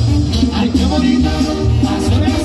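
Loud live banda music from a Mexican brass band: horns and reeds playing over a strong, steady low bass line.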